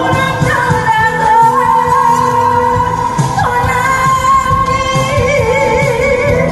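A woman singing live into a microphone over amplified backing music with a steady beat, holding long notes and adding vibrato near the end.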